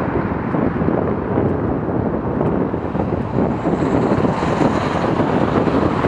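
Steady wind buffeting on the microphone of a moving camera. From about three and a half seconds in, a hiss builds over it as a car comes up alongside on the right to overtake.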